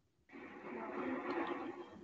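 Hiss and faint, muffled background sound from a participant's open microphone on a video call, starting a moment in.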